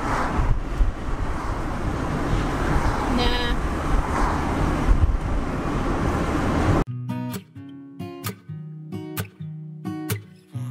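Steady road noise inside a moving car, with a brief pitched sound about three seconds in. About seven seconds in it cuts suddenly to strummed acoustic guitar music.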